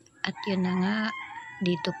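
A rooster crowing: one long wavering call whose pitch falls as it trails off. A woman's voice starts speaking near the end.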